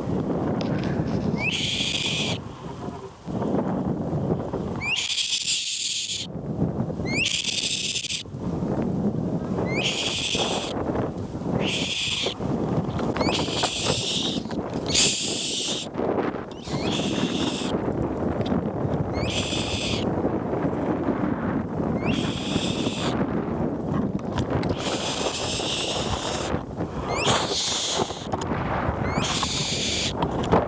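Wind buffeting the microphone and rustling the leaves and branches of a small tree, a steady rushing noise. Over it come repeated high buzzing bursts, each about a second long, every one to two seconds.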